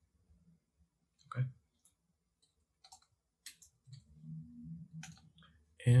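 Soft, close-miked mouth and lip clicks from a man listening quietly, with a brief spoken "okay" about a second in and a low closed-mouth "mm" of acknowledgement around four seconds in.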